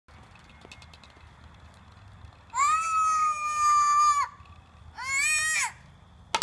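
A young child squealing twice in high-pitched cries: the first is held steady for nearly two seconds about halfway through, the second is shorter, rising then falling in pitch, near the end.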